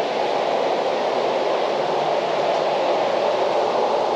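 Steady, even rushing noise with no breaks or strikes.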